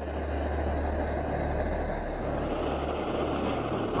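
Handheld gas blowtorch burning steadily, its flame directed onto a small limestone sample to heat it. A continuous, even hiss and rumble with no change in level.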